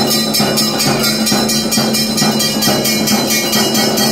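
Temple bells ringing in a fast, even rhythm with percussion, about five strokes a second, over a steady held tone: the ringing that accompanies the puja and lamp offering.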